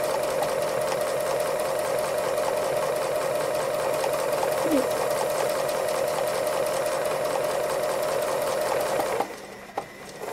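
Domestic sewing machine running at a steady speed, stitching free-motion embroidery. It stops about nine seconds in.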